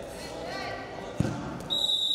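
A dull thud of wrestlers' bodies hitting the mat during a takedown scramble, a little over a second in, with a voice calling out just before it. Near the end a steady, high-pitched whistle-like tone starts.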